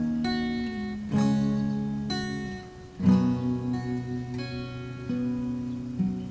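Acoustic guitar strummed, chords struck and left to ring out, with strong strums about a second in and about three seconds in and lighter ones between.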